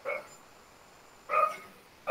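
A dog barking twice, two short single barks about a second and a half apart.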